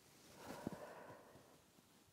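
Near silence broken about half a second in by a woman's faint, short exhale as she curls forward in a stretch, with a soft low thump in the middle of it.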